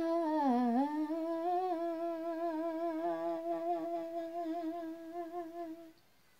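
A woman singing unaccompanied, holding the final note of a Tagalog ballad: one long wavering note that dips twice in the first second, then holds steady and slowly fades, stopping just before the end.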